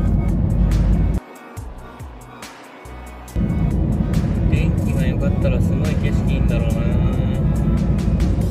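Car cabin noise at expressway speed: a steady low road-and-engine rumble. It drops away suddenly for about two seconds, starting about a second in, then comes back.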